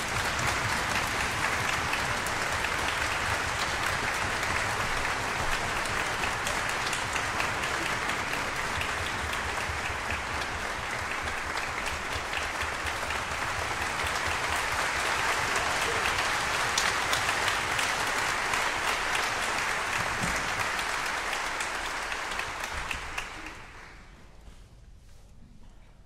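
Audience applause in a concert hall, a dense steady clapping that greets the soloists and conductor as they take the stage, dying away near the end.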